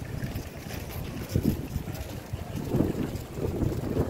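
Wind buffeting the microphone as a low, uneven rumble, with stronger gusts about one and a half seconds in and again near three seconds.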